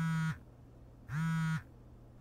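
Mobile phone vibrating with an incoming call: two steady buzzes of about half a second each, a little over a second apart.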